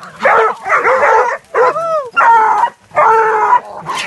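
Hunting dogs barking and yelping in a quick series of about six calls, some sliding down in pitch, as they fight a collared peccary holed up in a burrow.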